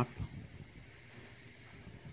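Faint handling noise of a brass lock cylinder being turned over in the fingers.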